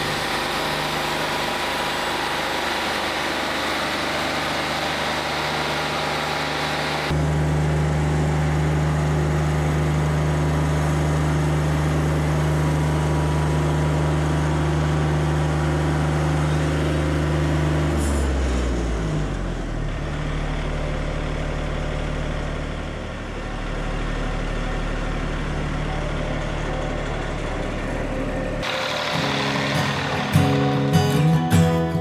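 Wood-Mizer LT40 Wide band sawmill running as its band blade saws through a beech cant: a steady engine drone with the cutting noise of the blade. The sound jumps louder about seven seconds in. About two-thirds of the way through, the engine note falls and settles lower.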